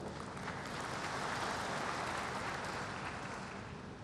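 A large audience applauding, a steady wash of clapping that swells slightly and then fades away near the end.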